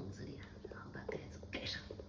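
Soft whispered speech, with a few faint light clicks.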